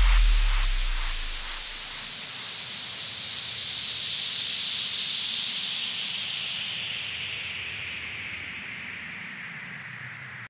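The closing effect of an electronic dance track: a white-noise sweep whose hiss falls steadily in pitch and fades away, over a low bass tail that dies out in the first two seconds.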